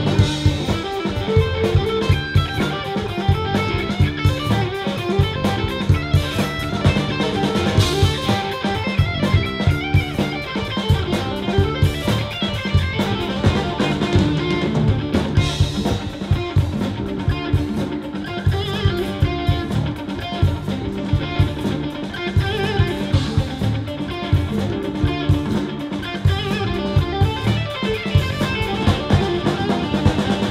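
Live rock band playing an instrumental passage: electric guitar, electric bass guitar and a drum kit with steady drum hits.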